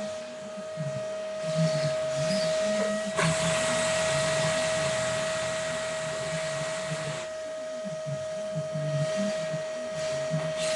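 Vacuum cleaner running with a steady motor whine. From about three seconds in to about seven seconds a loud rush of suction noise swells over the whine, then drops back.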